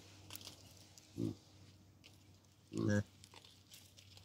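Hamadryas baboon giving two low grunts: a short one about a second in and a longer, louder one just before the three-second mark. Faint ticks and crackles sound in between.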